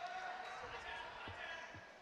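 Faint murmur of distant voices in the hall, with two soft low thumps about a second apart in the second half: a basketball bouncing on the court floor.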